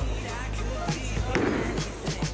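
A bowling ball rolling down the lane with a low, steady rumble, under background music.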